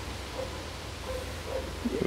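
Low, steady background noise with a faint low hum, and a faint click right at the start.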